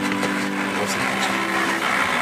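Small engine of a motorised tandem bicycle running at a steady hum; part of the hum drops away near the end as the bike is brought to a stop.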